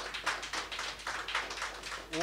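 Scattered applause from a small audience: a few people clapping, dense and irregular.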